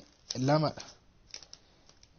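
A man's voice saying one short syllable about half a second in, then a few faint clicks in the pause that follows.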